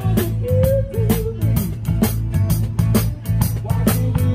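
Live band playing an instrumental passage: drum kit keeping a steady beat on the cymbals, bass, and a guitar lead with bending, sliding notes.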